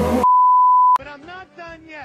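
A loud, steady, single-pitched beep lasting under a second, cut off sharply; an edited-in beep sound effect. A person's voice follows for about a second.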